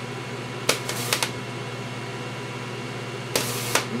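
Solid-state Tesla coil running in its power-arc mode: a steady low buzz from the discharge. It is broken by a few short, louder hissing bursts, two about a second in and a longer one near the end.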